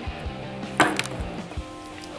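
Soft background music, with one sharp knock a little under a second in: a small 3D-printed plastic figure set down on a wooden tabletop.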